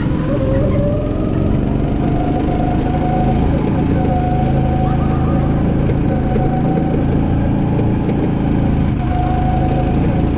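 Go-kart's small engine running steadily as the kart drives around the track, heard from on board.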